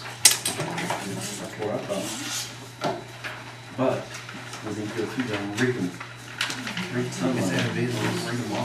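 Scattered sharp knocks and clatters of objects being handled at a table, the loudest just after the start, with low indistinct talk in between.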